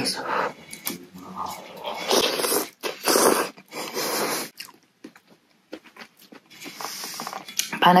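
A person eating a mouthful of very hot rice-vermicelli noodle soup close to the microphone: chewing, with several short, breathy bursts of mouth noise a couple of seconds in as the food burns, then the word "panas" (hot) at the end.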